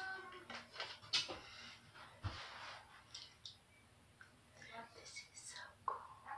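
A woman whispering softly, with a brief low thump about two seconds in.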